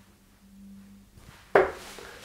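A steel-tip Harrows Damon Heta tungsten dart strikes a sisal bristle dartboard once, sharply, about one and a half seconds in, with a short trailing ring.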